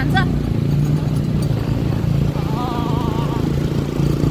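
Motorcycle engine running steadily while riding, heard as a continuous low drone, with wind rumble on the microphone.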